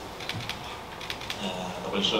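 Scattered light, sharp clicks, several a second, in a room, with a man's voice starting again near the end.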